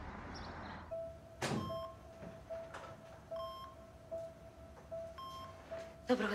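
Hospital bedside patient monitor beeping its heart-rate tone, a short steady beep about every 0.8 s, with a higher beep about every second and a half or so. A thud comes about one and a half seconds in, with a few fainter knocks later.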